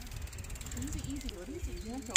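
Bicycle freewheel ticking rapidly and evenly as a bike coasts past, with faint voices underneath.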